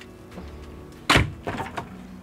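A single sharp thunk about a second in, from the motorhome's kitchen pantry and refrigerator doors being opened and closed by hand.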